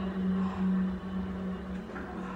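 A steady low hum with a deep rumble beneath it, from the TV episode's soundtrack playing.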